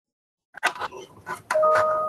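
A short electronic chime: a single steady note held for just under a second, starting about one and a half seconds in. Before it, after a moment of silence, come faint clicks and rustles, as when a call microphone opens.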